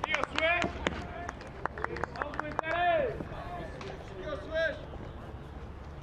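Players' voices shouting short calls and chatter across the ballpark, with a few sharp clicks in between.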